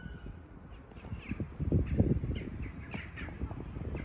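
Birds calling over a low, gusting rumble that rises and falls and is loudest about two seconds in.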